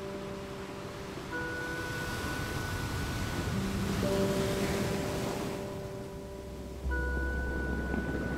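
Ocean surf washing up a sandy beach, swelling to its loudest about halfway through and then drawing back. It sounds under slow background music of held chords that change every few seconds.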